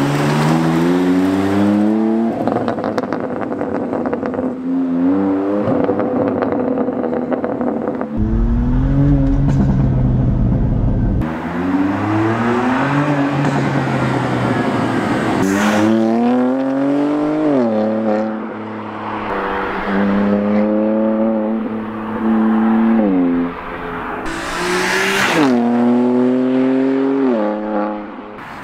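BMW M2 Competition's twin-turbo straight-six running through a loud aftermarket PCW exhaust. It accelerates hard again and again, the engine note climbing through the revs and dropping back at each gear change, with a stretch of deep rumble about eight seconds in.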